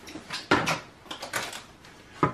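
Shopping being brought in and set down in a kitchen: a knock about half a second in, with a few lighter knocks and rustles.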